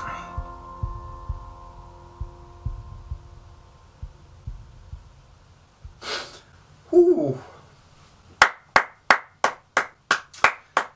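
Soundtrack music fading out over low, irregular thumps, then a man's exhale and a falling 'ohh'. From about eight seconds in he claps his hands steadily, about three claps a second.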